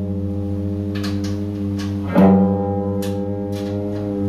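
Electric guitar played through an amplifier: a low chord held and ringing, struck again about two seconds in, with a few faint ticks above it.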